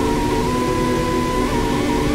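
Improvised electronic music from a synthesizer and a keyboard harmonica heard through a small speaker. Low held chord tones sit under a higher sustained note that wavers in short trills, over the steady rush of a waterfall.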